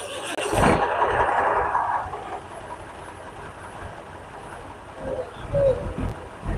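A road vehicle passing close by: its noise swells in the first second and fades by about two seconds in, leaving a steady lower background hum of traffic.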